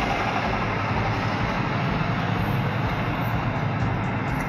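Steady rushing background noise, even and unbroken, with no distinct knocks, clicks or tones.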